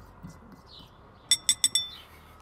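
Metal spoon tapping four times in quick succession against a glass bowl of pumice paste, each clink ringing briefly.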